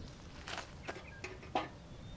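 A few faint, short knocks and rustles, the loudest about one and a half seconds in.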